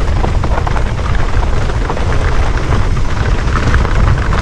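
Mountain bike rolling fast downhill on a dirt trail: heavy wind rumble on the handlebar camera's microphone, with tyre noise and short rattles and clicks from the bike over the bumps.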